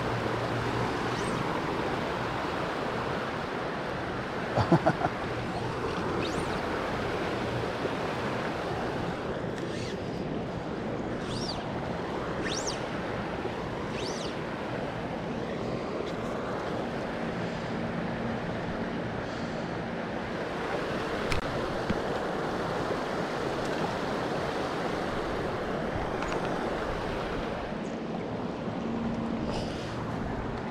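Steady rushing of flowing river water, with a few faint, brief high chirps in the middle.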